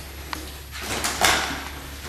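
Handling noise as a rubber resistance band is pulled off a banister and gathered up: a faint click, then a brief rustling swish about a second in, over a steady low hum.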